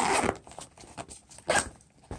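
Brief rustling of a nylon pouch being handled, two short scuffs, one at the start and one about one and a half seconds in.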